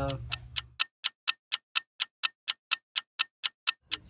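Stopwatch-ticking sound effect: evenly spaced sharp ticks, about four a second, used as a time-skip transition.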